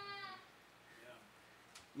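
An elderly man's voice holding out the end of a word, falling slightly in pitch and fading out within the first half second, followed by a pause of near silence with faint room tone.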